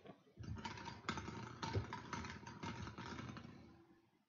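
Draw balls rattling and clattering against each other and a clear glass bowl as they are stirred by hand: a dense run of clicks lasting about three seconds that tails off near the end.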